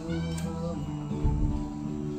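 Acoustic guitars playing sustained chords in a slow passage of the song, with a short rising note near the start.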